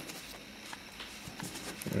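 Fingers handling a cardboard parcel sealed with packing tape: a scatter of light taps, clicks and scrapes as the edge of the tape is picked at.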